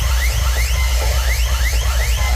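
Electronic dance music played very loud through a large outdoor DJ sound system: a heavy sustained bass under quick, repeated rising sweeps, about five a second.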